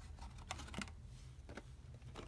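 A few light clicks and taps of plastic VHS tape cases being handled and moved about.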